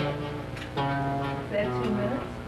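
Music with plucked guitar notes: one struck at the start and another just under a second in, each ringing on.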